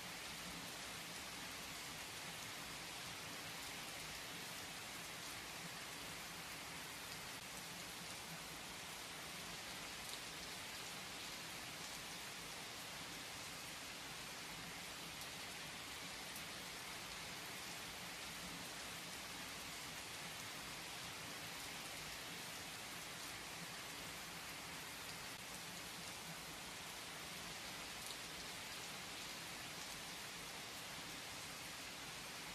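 Steady rain falling, an even hiss that does not change, with a few faint scattered drop ticks.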